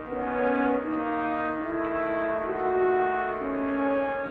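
Film score music: a slow melody of long held notes over sustained chords.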